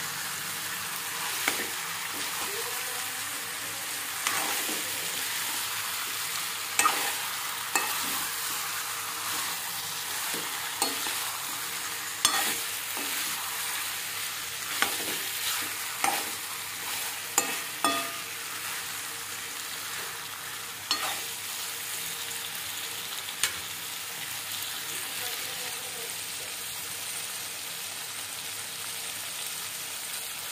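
Chicken pieces sizzling as they fry in thick masala in a metal pan, with a steel spoon scraping and knocking against the pan as they are stirred and turned. The clatter of stirring comes in scattered strokes and stops about three quarters of the way through, leaving the steady sizzle.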